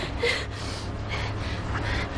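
A woman breathing in quick, heavy gasps, roughly one every two-thirds of a second: distressed breathing.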